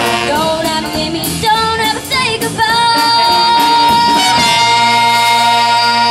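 A middle-school jazz combo with a girl singing, saxophones, trombone and drums plays the closing phrase of a jump-blues number. From about halfway through, the band holds one long final chord.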